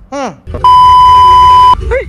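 Censor bleep: a loud, steady single-pitch beep lasting about a second, starting about half a second in, over a low rumble. Just before it comes a brief falling vocal sound.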